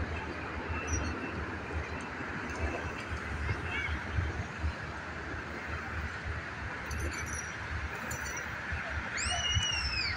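Steady outdoor rumble and hiss with no rise or fall, with a bird giving a few short rising-and-falling calls near the end.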